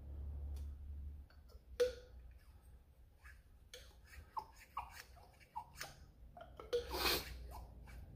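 Small clicks and scrapes of a metal pick working an O-ring off an aluminum tube, with one sharp click about two seconds in and a longer scrape near the end.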